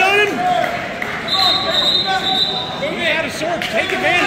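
Referee's whistle, one steady high blast about a second and a half long in the middle, over shouting voices of the crowd and coaches in a gym.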